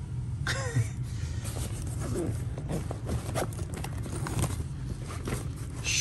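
Rustling and light knocks of bags and packed items being handled and rummaged through, over a steady low hum.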